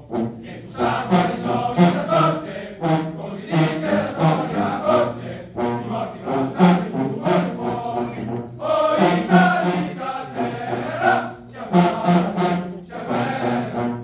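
A Bersaglieri fanfare band singing a patriotic hymn in chorus, many voices together in a marching rhythm, with short sharp hits.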